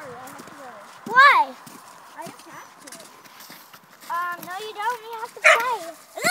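A child's wordless vocal calls: a loud rising-and-falling squeal about a second in, then a run of drawn-out, sing-song calls that step up and down in pitch near the end.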